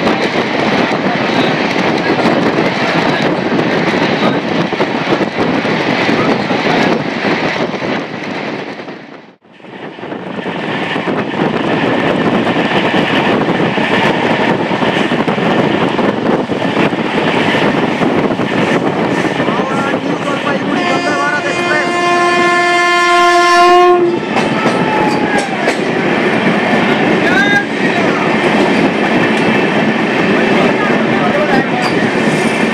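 Steady running noise of the Amrit Bharat Express at speed, heard from an open door, with a brief drop in level about nine seconds in. About two-thirds of the way through, a train horn sounds for about three seconds and cuts off sharply.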